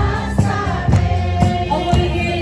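A group singing together over a steady drum beat of about two beats a second.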